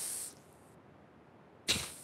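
Two short, soft whooshing breaths into a close microphone: one fading out at the start and one drawn about 1.7 s in. Between them, near silence.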